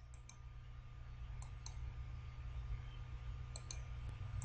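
Computer mouse button clicking: three pairs of sharp clicks, near the start, about a second and a half in, and near the end, over a steady low hum.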